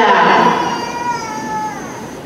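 One long, high-pitched yell from a single voice in the crowd, held and then sliding down in pitch as it fades near the end.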